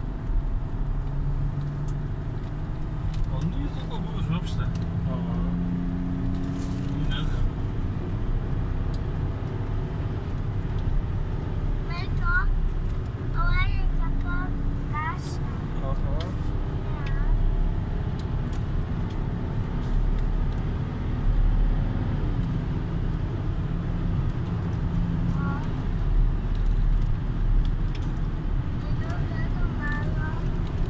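A car's engine and road noise heard from inside the cabin while driving at speed, the engine note shifting up and down with the revs.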